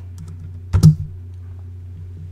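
A single sharp click of a computer key or button being pressed, over a steady low hum.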